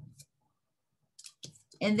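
Near silence, then a few faint clicks of tarot cards being handled as a card is drawn from a hand-held deck.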